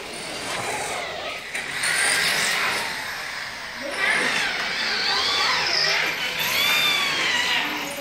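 Handheld electric drill whirring in short runs, its whine rising and falling in pitch as the trigger is squeezed and eased.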